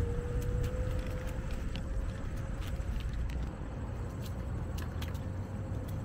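Electric scooter motor whining at one steady pitch that creeps slightly upward as the scooter gathers speed, over low wind and road rumble, with a few light clicks.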